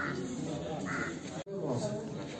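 Two short bird calls, one at the start and one about a second in, over a murmur of voices.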